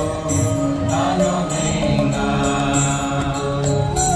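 Devotional chanting with music: long held sung notes over a steady accompaniment.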